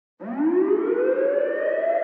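A siren-like wail, the lead-in riser of an intro music track, starts a moment in and climbs in pitch, quickly at first and then levelling off.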